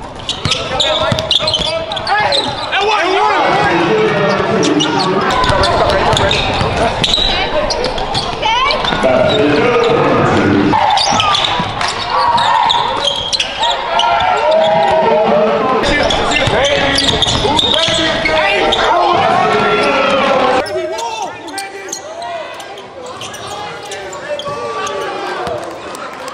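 Live gym sound of a basketball game: a basketball bouncing on the hardwood court, with players' and spectators' voices echoing in the large hall. It gets quieter about four-fifths of the way in.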